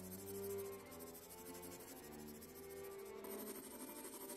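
Soft background music of long held notes, with the faint scratch of a mechanical pencil shading on sketch paper underneath.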